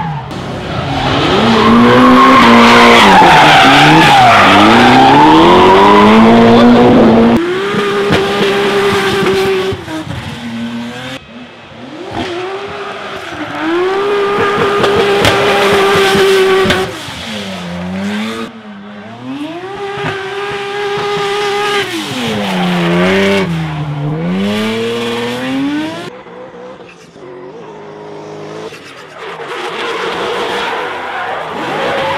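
Drift cars sliding through corners: engines revving hard, held high for a second or two at a time, then dropping and climbing again over and over, with tyre squeal and skidding from the spinning rear tyres. The loudest stretch, with the heaviest tyre noise, is in the first few seconds.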